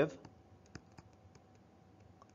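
Faint scattered clicks of a stylus tapping on a tablet screen while writing, about a dozen in the first second and a half.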